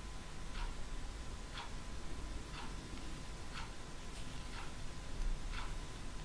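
Faint, regular ticking of a clock, one tick each second.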